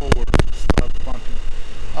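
Steady hum of the running BMW i8 in its engine bay, including a pump that is making some noise. Several sharp, irregular clicks come in the first second.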